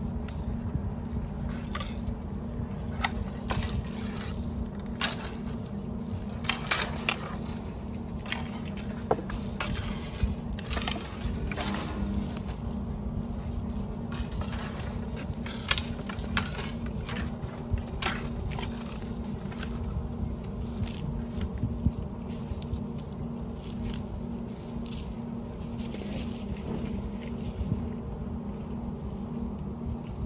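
Scattered crackles and scrapes as electric-fence polywire and its wooden spool are handled among dry brush and grass, over a steady low rumble.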